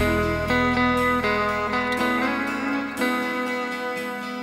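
Stratocaster-style electric guitar played over a backing track: sustained notes and chords changing every second or so, with a bass part underneath that drops away about three seconds in.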